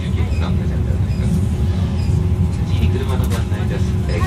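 Running noise inside a moving 485-series electric train carriage: a steady low rumble from the wheels and track with a constant hum over it, and low voices in the car.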